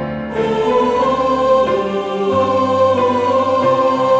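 Mixed choir singing a sacred anthem in unison over piano accompaniment, growing louder towards a fortissimo after a brief dip just after the start.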